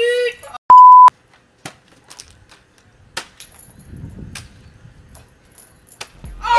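A short, loud electronic beep at one steady pitch, under half a second long, of the kind edited into a video to bleep out a word. It comes right after a voice is cut off. After it there are only faint scattered clicks and a soft low rumble.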